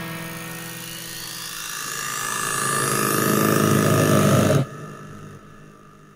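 Hardstyle build-up in a DJ mix: a synth sweep rising steadily in pitch and growing louder for about four seconds, then cutting off suddenly, leaving a faint tail.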